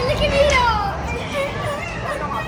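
Children's excited voices yelling on an amusement ride, high cries sliding up and down in pitch, over a low rumble that stops after about a second.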